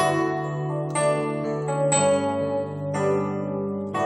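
Yamaha DGX-640 digital keyboard played through its built-in speakers: full chords struck about once a second over sustained bass notes.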